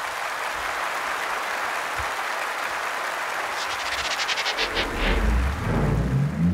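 A conference audience applauding at the end of a keynote speech. About four and a half seconds in, an electronic music sting comes in under the clapping, with a deep rumble and sweeping rising and falling tones.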